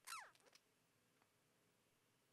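Near silence: room tone, broken just after the start by one brief, faint squeak that falls quickly in pitch.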